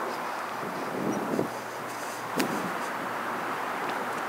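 Steady outdoor background noise with wind on the microphone, and a brief click about two and a half seconds in.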